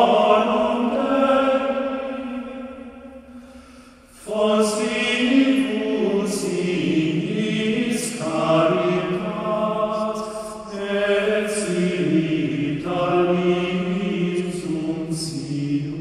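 Choral chant singing in long held notes. One phrase fades out about three to four seconds in, and the next begins right after.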